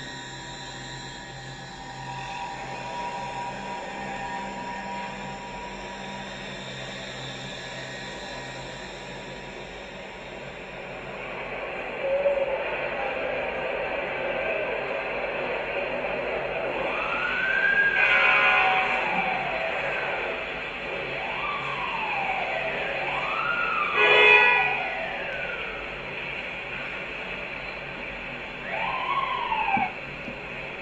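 Film soundtrack: sustained music, then from about halfway a siren wailing up and down several times over the music.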